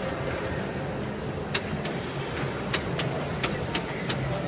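Wheel of Fortune pinball machine in play: irregular sharp clicks and knocks of the ball and flippers, several a second at times, over a steady low hum.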